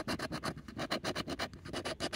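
A coin scraping the coating off a scratch-off lottery ticket in quick, repeated back-and-forth strokes, many to the second.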